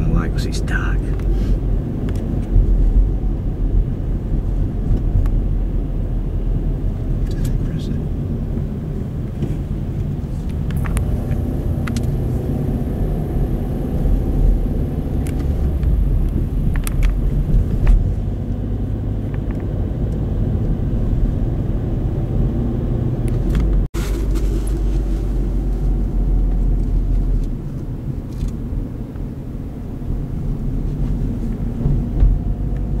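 Steady low rumble of a car driving, heard inside the cabin: engine and tyre noise on the road, with a few faint clicks and a very brief break in the sound about three-quarters of the way through.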